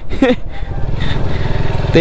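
Motorcycle engine running steadily while being ridden at low speed, a low rumble of fast, even firing pulses over a rushing noise.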